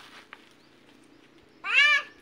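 A young child's voice giving one short, high-pitched call that rises and holds, near the end.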